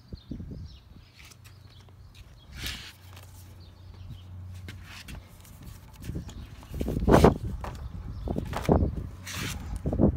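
Irregular thumps and rubbing noises close to the microphone as a hand handles a heavy cocobolo wood slab; the loudest thump comes about seven seconds in, with a few more near the end.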